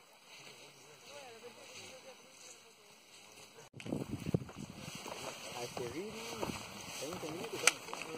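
Indistinct voices of people talking. They are faint at first, then louder after an abrupt cut a little under four seconds in, over a light outdoor hiss, with one sharp click near the end.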